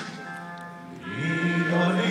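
A national anthem sung by many voices together with music, in long held notes. Quieter in the first half, then a new held phrase swells in about a second in.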